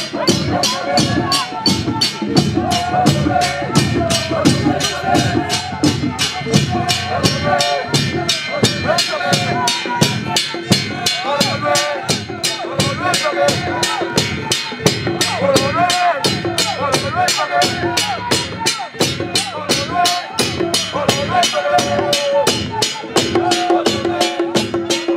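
A band of large hand-held frame drums beaten with sticks, together with cymbals, keeping up a fast, even beat of about four strokes a second, with a crowd singing along over it.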